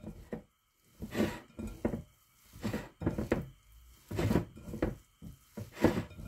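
Hands mixing and squeezing a wet ground-meat mixture in a glass bowl, giving irregular short bursts of handling noise and bowl knocks about once or twice a second.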